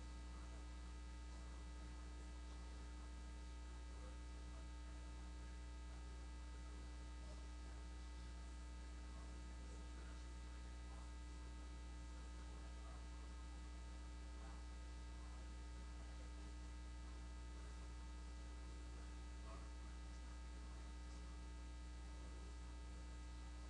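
Steady electrical mains hum on the audio feed, a low buzz with a row of even overtones and faint hiss, unchanging throughout.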